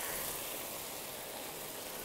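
Frying pan sizzling with a soft, steady hiss as chopped tinned tomatoes cook over onions and spices in hot oil, easing off slightly.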